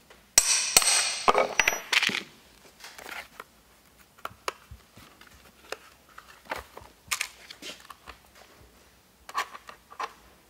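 Copper rivets and washers being pushed together by hand through a leather sheath. A dense burst of clicking and scraping lasts about two seconds, then small scattered clicks of metal on leather follow.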